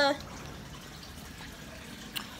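Steady trickle of water from a running aquarium filter, an even, continuous sound.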